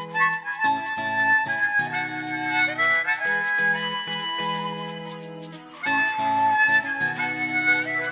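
Instrumental intro of a Hindi pop song: a harmonica plays the melody over sustained backing chords. The music drops away briefly about two-thirds of the way through, then comes back.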